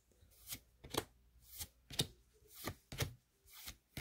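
A stack of Pokémon trading cards being flipped through by hand, each card slid from the front to the back of the stack with a short, soft flick, about twice a second.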